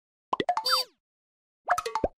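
Cartoon-style pop sound effects for an animated subscribe reminder: a quick cluster of pops with sliding pitches about a third of a second in, a gap of silence, then another short burst of pops near the end.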